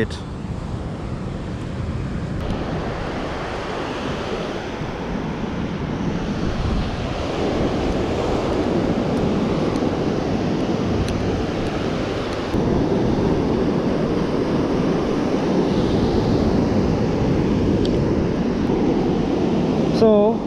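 Ocean surf breaking on a beach, with wind on the microphone, growing louder through the stretch and stepping up about halfway through.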